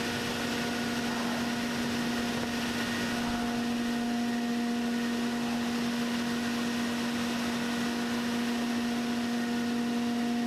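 Steady electric motor hum of workshop machinery running, a constant pitched tone over an even hiss.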